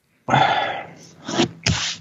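A man's sneeze-like, breathy vocal burst, followed by two short puffs of breath about a second in.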